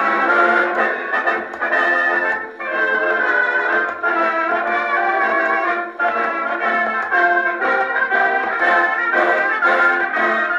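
Brass band playing a march from a 78 rpm shellac record on a portable wind-up gramophone. The sound is thin, with no deep bass.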